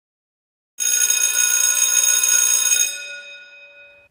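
A single ringing intro sound effect under a title card. It comes in suddenly under a second in, holds steady, then fades away over the last second.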